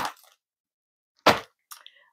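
A short crinkle of a metallic foil bubble mailer being handled about a second in, with a few fainter rustles near the end.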